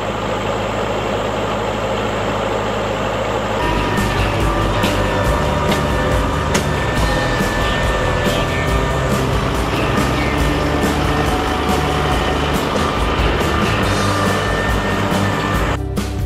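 LS compact tractor's diesel engine running steadily, first at idle with the box blade hitched, then working as it drags the box blade across the field. From about four seconds in, background music plays over the engine.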